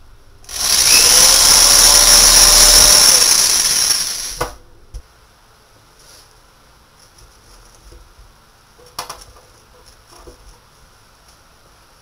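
Cordless drill running for about four seconds, boring a hole through the plastic bottle cap of a homemade sand filter. It is followed by a few light clicks and taps as the bottle and glass are handled.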